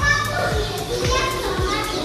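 Children's voices and chatter in the background.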